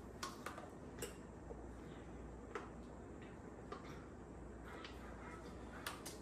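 A few faint, scattered clicks and crinkles of a plastic water bottle being handled, over quiet room tone.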